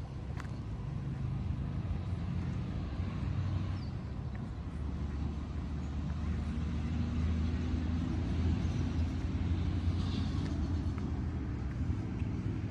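A motor vehicle's engine running as low traffic rumble, swelling louder through the second half.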